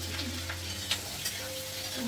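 Oil sizzling in a frying pan on a gas stove while a metal spatula stirs, with a couple of light clicks of the spatula against the pan about a second in.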